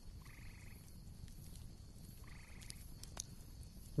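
Two faint, short, buzzy animal calls about two seconds apart, with a few faint clicks later on, over low background noise.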